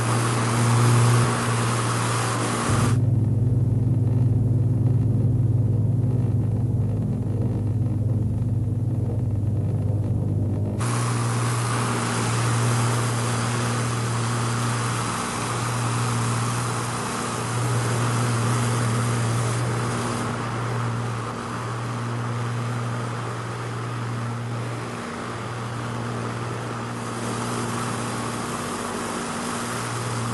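Four-engined piston airliner (Canadair C-4 Argonaut, Rolls-Royce Merlin engines) droning steadily in flight, with a deep, even propeller hum. From about three seconds to eleven seconds in, the drone turns duller and heavier, without its upper hiss.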